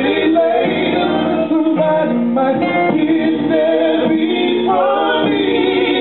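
Live R&B song: a man sings held, wavering vocal lines over sustained chords on a Yamaha keyboard.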